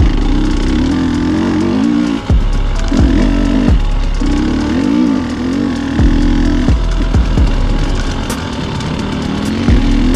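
KTM 300 XC's single-cylinder two-stroke engine running under throttle on a dirt trail, its pitch rising and falling quickly as the rider works the throttle, and dropping off briefly a few times.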